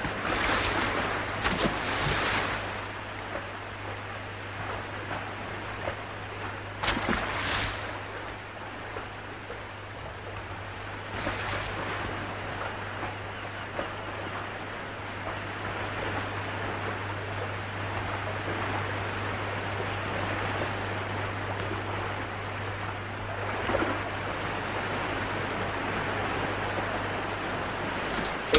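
Sea water washing and splashing against a submarine's side, with a heavy splash in the first couple of seconds and shorter surges about seven and eleven seconds in.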